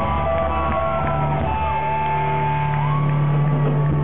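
Post-hardcore band playing live: electric guitars ringing out over a held low note and drums, with shouting voices over the top.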